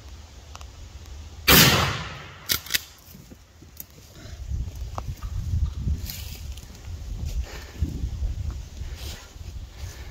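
A single shotgun shot at a wild turkey, sharp and very loud about one and a half seconds in, trailing off over half a second. Two sharp knocks follow soon after, then a stretch of low rustling and thumps.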